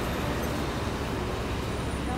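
Steady road traffic noise with a low rumble.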